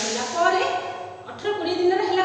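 Speech only: a woman talking steadily.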